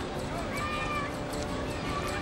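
Distant children's voices calling in a park, with one high, drawn-out call about half a second in.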